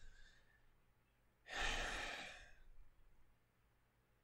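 A man's sigh: one breathy exhale lasting about a second, starting about a second and a half in.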